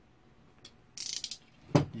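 A short burst of rapid fine clicking about a second in, followed by a single sharp knock, from a craft knife and a stick of steel epoxy putty being worked on the table as a small piece is cut off.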